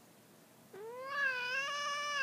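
Adult domestic cat giving one long, drawn-out yowl that starts under a second in, rising a little and then held steady. It is a territorial warning at a new kitten, which the owner reads as fear rather than attack.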